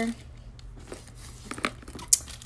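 Faint rustling and a few soft taps from a fabric backpack and its contents being handled and opened.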